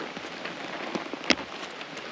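Rolled leather motorcycle chaps being handled while a metal snap fastener is pressed shut. There is a single sharp snap click about a second and a half in, over a steady background hiss.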